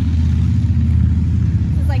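A loud, steady low rumble with no clear speech over it.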